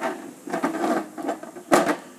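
Plastic wrestling action figures knocked and clattered by hand against each other and a toy wrestling ring: a run of small clicks and knocks, with one sharper knock near the end.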